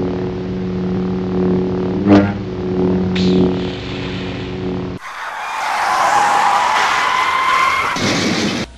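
Lightsaber sound effects: a steady electric hum with two sharp swings, the loudest about two seconds in and another about a second later. About five seconds in, the hum cuts off and a harsh screeching noise takes over.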